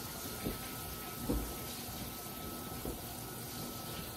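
A plastic spice shaker shaken over cubes of raw venison: a few soft taps over a faint steady hiss.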